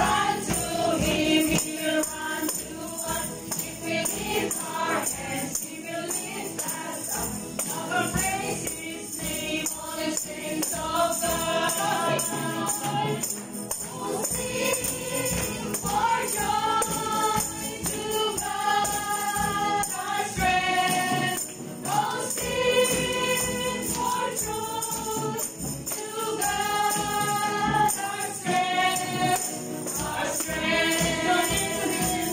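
Christian worship song sung by several voices over musical accompaniment, with long held notes in the second half and tambourines jingling along.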